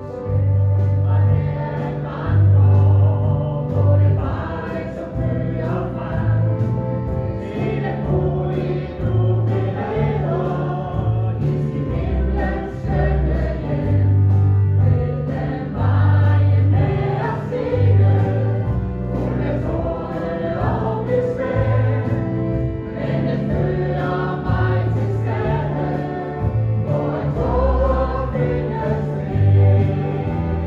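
Choir singing a gospel hymn over instrumental accompaniment, with a bass line moving in held notes underneath.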